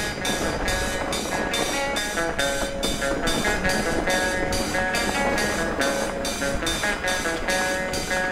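Background music with a steady quick beat, about three beats a second, and sustained pitched notes, over a low steady rumble.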